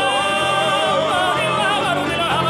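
Several male voices singing a wordless line in harmony, with wide vibrato, over plucked stringed-instrument accompaniment.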